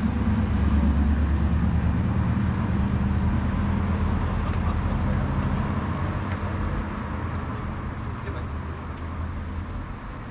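A motor vehicle engine running with a steady low hum that slowly fades, over general city street noise.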